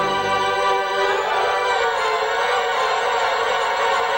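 Mighty Wurlitzer theatre pipe organ holding sustained chords; the deep bass drops out about half a second in, the chord shifts about a second in, and the new chord is held steadily.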